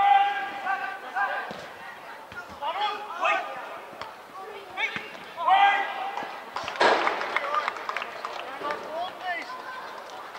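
Footballers shouting on the pitch in loud, drawn-out calls, with one sharp thud about seven seconds in, and the faint open-air sound of a small football ground.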